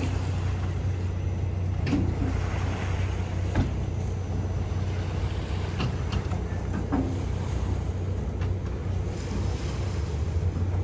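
A steady low engine drone under an even haze of wind and water noise, with a few faint short sounds scattered through it.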